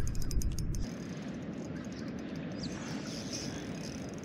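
Wind rumbling on the microphone for about the first second, then a steady low rush of wind and water.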